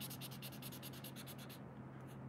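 Faber-Castell Connector felt-tip pen scribbling on paper in fast, even back-and-forth colouring strokes, about nine a second. The strokes stop about a second and a half in.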